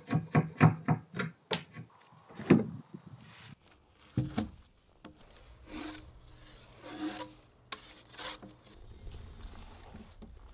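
Hand-worked wood being shaved and scraped: a quick run of short rasping strokes, about three a second, then a few slower, longer strokes of a drawknife drawn along a log, about a second apart.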